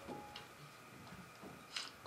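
Quiet room tone with a few faint clicks or taps, the clearest one near the end.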